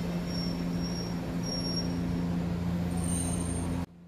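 Electric commuter train rolling slowly through the station, a steady low running hum with a faint higher tone now and then. The sound cuts off abruptly just before the end.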